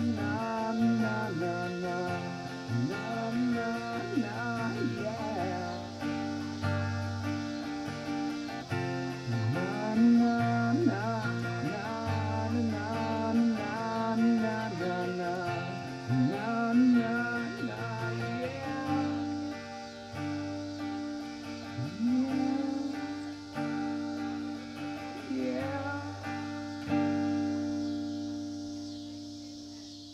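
Acoustic guitar strumming the song's closing chords, ending on a last chord that is held and fades away near the end.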